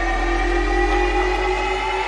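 Electronic music: a sustained synth chord that slowly rises in pitch over a deep, steady bass drone.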